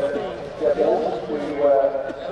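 People talking: men's voices in casual conversation close to the microphone.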